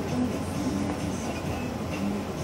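Steady low rumble of engine and road noise heard from inside a slowly moving vehicle.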